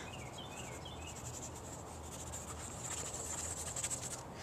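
Faint outdoor ambience: a steady, high-pitched pulsing trill, insect-like, with a few short chirps in the first second.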